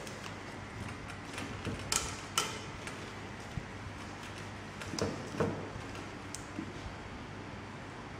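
Light handling sounds of a thin sheet being folded and pressed over the mouth of a glass cylinder as a makeshift stopper: soft crinkles and a few sharp little clicks, the clearest about two and five seconds in, over a low steady hum.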